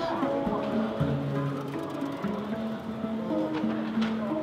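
Music with long held notes, with a short laugh about a second in.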